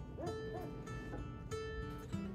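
Two short, high whimpers from golden retriever puppies over acoustic guitar music.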